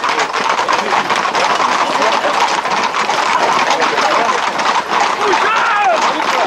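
Dense, unbroken clatter of many Camargue horses' hooves on an asphalt road as a tightly packed group of riders moves along, with shouting voices of people running beside them.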